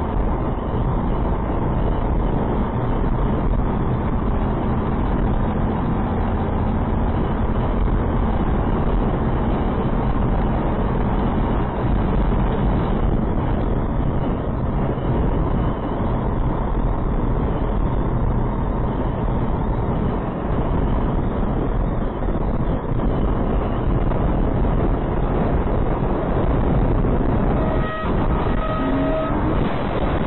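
Steady wind and road noise inside a truck cab at highway speed in a strong crosswind. Near the end there is a sharp knock, then a short horn tone, as the truck is blown over.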